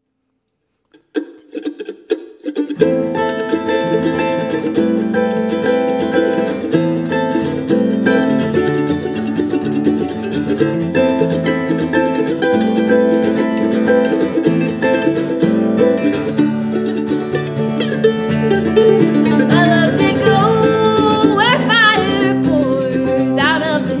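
Acoustic guitar and mandolin playing a folk-bluegrass intro: a few single plucked notes about a second in, then both instruments playing fully. Near the end a singing voice comes in over them.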